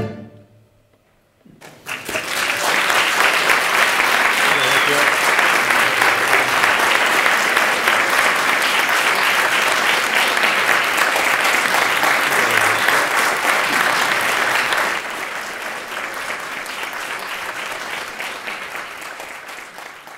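The last chord of guitar and bandoneón dies away, and after a moment of near silence an audience breaks into steady applause about a second and a half in. The applause thins somewhat for the last few seconds and fades out.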